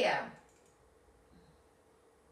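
Faint clicks of a computer mouse changing slides, after a short spoken word at the start.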